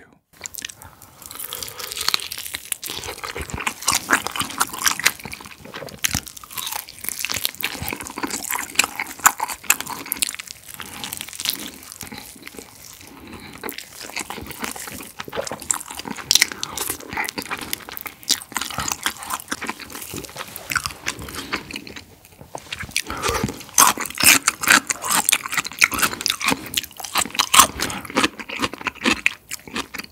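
Close-miked biting and chewing of sauced Korean fried chicken with a thin batter: a continuous run of irregular crunchy, wet clicks from mouth and coating. The bites grow louder in the last quarter, after a brief lull.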